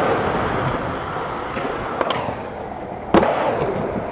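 Skateboard wheels rolling on smooth concrete, with a loud, sharp clack of the board hitting the ground about three seconds in, echoing in a large indoor hall.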